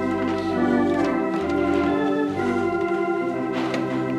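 Organ playing a hymn: sustained chords over a steady bass, the chords changing every second or so.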